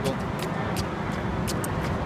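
Roadside traffic noise: a steady low rumble, broken by a few irregular sharp clicks.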